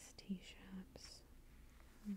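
A woman's quiet whispering and soft hums in a few brief snatches during the first second or so, then near quiet.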